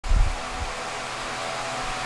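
A brief low thump at the very start, then a steady rushing noise with faint steady hum tones, like a fan running.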